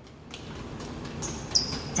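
A runner's sneakers striking a hard tiled floor in quick, fairly faint footfalls, with a few short high squeaks in the second half.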